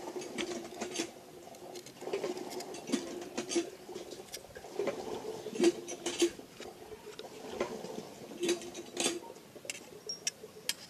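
Small metal parts of a diesel fuel pump clicking and tapping as they are handled and fitted by hand, with sharp clicks scattered throughout. Underneath runs a low hum that comes and goes.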